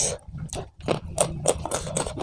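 Close-miked mouth sounds of a person eating with his hands: wet chewing and lip smacking in a quick, irregular run of short clicks and squelches.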